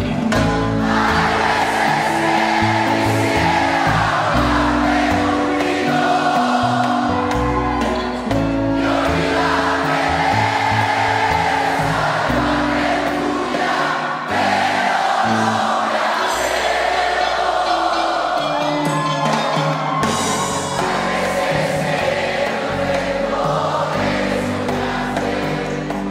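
Live rock band playing, with a large concert audience singing along in chorus.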